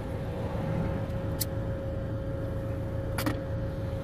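Steady engine hum heard inside the cab of a commercial vehicle standing with its engine running, with a faint steady whine and two short clicks, one about a second and a half in and one near the end.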